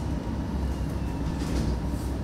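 Steady low hum and rumble of room background noise, picked up by the open microphones during a pause in speech.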